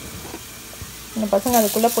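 Steady sizzle of potato slices deep-frying in hot oil, with the hiss growing louder about one and a half seconds in.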